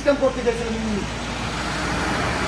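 A road vehicle passing, its noise swelling from about a second in and staying loud to the end.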